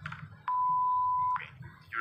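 Censor bleep: a single steady high-pitched beep lasting a little under a second, starting and stopping abruptly.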